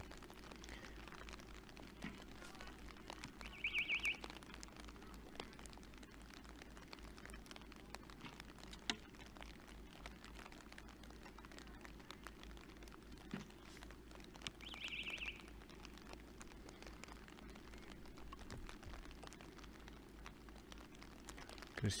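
Quiet outdoor ambience with a faint steady hiss, broken by a few isolated sharp clicks and two short, high trilled chirps about eleven seconds apart.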